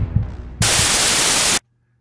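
The tail of a rock intro track with a few drum hits, then about a second of loud white-noise static, a glitch-transition sound effect, which cuts off suddenly into silence.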